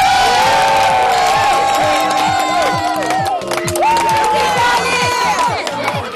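A small crowd of adults and children cheering and shouting together, many voices overlapping, with music underneath.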